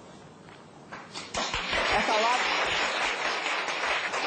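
A studio audience bursts into loud applause mixed with voices about a second in, a dense, continuous clatter of clapping.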